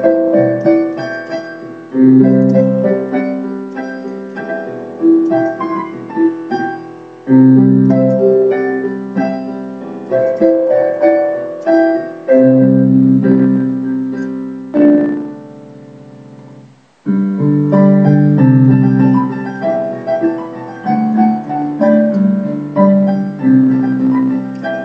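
Solo piano playing a pop ballad, left-hand chords under a right-hand melody. About fifteen seconds in a chord is held and left to fade out, and playing picks up again about two seconds later.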